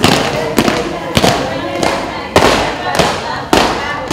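A steady beat of sharp cracking strikes, about one every 0.6 seconds, each ringing on briefly, keeping time for the dance steps.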